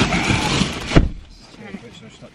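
Plastic carrier bag rustling as it is handled, ending in a single sharp thump about a second in.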